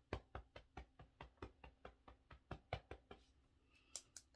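Fingertips tapping on the body at the under-arm point of an EFT tapping sequence: faint, even taps, about seven a second. They stop a little after three seconds in and start again just at the end.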